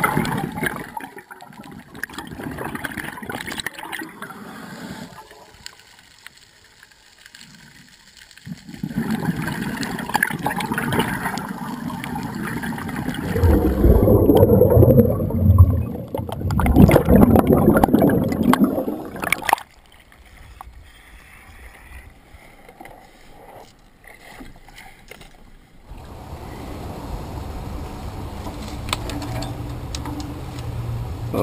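Underwater water noise heard through a camera housing during a night dive: bubbling and water movement, in several short clips that cut in and out. The loudest stretch is in the middle, with heavier rumbling bubbling.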